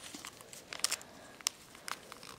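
Origami paper crinkling and crackling under the fingers as a fold is pressed down and held, in a few faint separate crackles.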